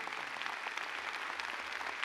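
Large audience applauding: a dense, steady patter of clapping.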